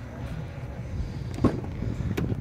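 Faint low rumble of wind and handling on the microphone, then a single sharp click about one and a half seconds in as the door latch of a 2011 GMC pickup releases and the door is pulled open.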